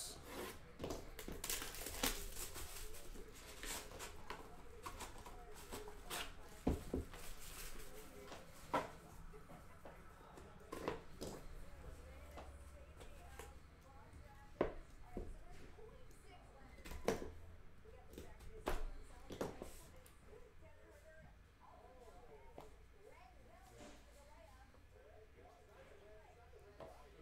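Hands unsealing and opening a cardboard trading-card hobby box. There is scattered rubbing, peeling and crinkling of the wrap and box, broken by a dozen or so sharp clicks and light knocks as the lid and inner pieces are handled. It grows quieter near the end.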